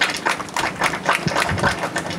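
Applause from a small group of people, a dense, irregular patter of hand claps.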